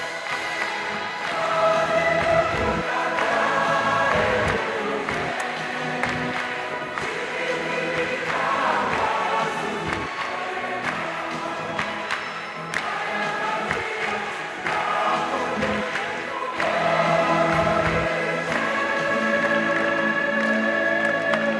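A choir singing a gospel song with musical accompaniment, live in a large hall.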